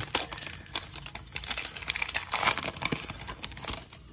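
Foil Panini Prizm trading-card pack being torn open and crinkled by hand: a dense run of sharp crackles that stops shortly before the end.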